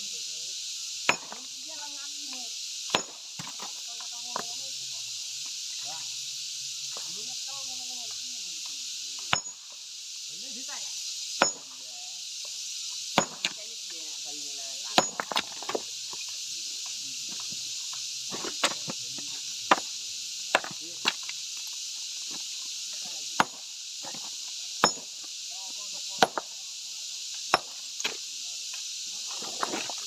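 Hand-swung hammer striking a large block of dark stone to split it: about twenty sharp, irregularly spaced blows, over a steady high hiss.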